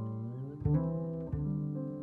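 Upright piano and double bass playing an instrumental jazz passage. Deep bass notes come in about half a second and a second and a half in, the first preceded by a short upward slide, under sustained piano chords.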